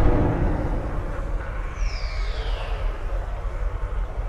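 Cinematic logo-intro sound effect: a deep boom at the start, then a heavy low rumble that runs on, with a whistling sweep falling in pitch about halfway through.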